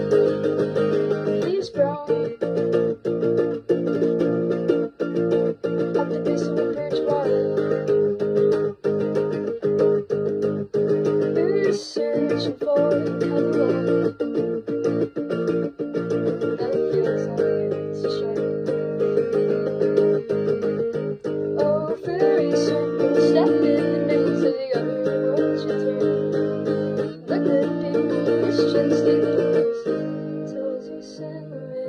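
Instrumental break of a song: guitar chords strummed in a steady rhythm, with the chords changing every few seconds.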